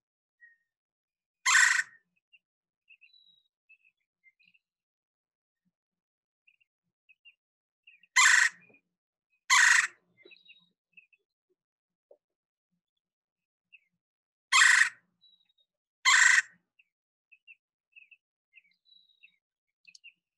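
Red-bellied woodpecker giving its loud rolling churr call five times: once, then two pairs, each pair about a second and a half apart. Faint chirps of other birds sound between the calls.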